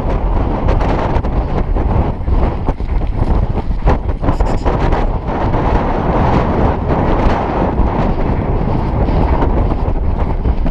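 Loud, steady wind buffeting on a jockey's helmet-camera microphone at full gallop, with irregular thuds of galloping hooves on turf beneath it.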